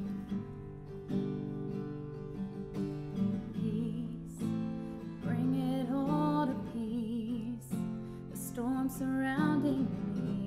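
Acoustic guitar strumming the opening of a worship song. A woman's singing voice joins in about halfway through, with a wavering held melody over the guitar.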